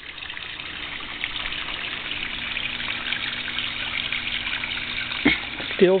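Small rock waterfall splashing steadily into a backyard koi pond, a constant trickling hiss. A single sharp click about five seconds in.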